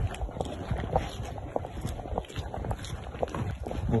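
Footsteps of a person walking at a steady pace, about two steps a second, with rustling from the hand-held phone.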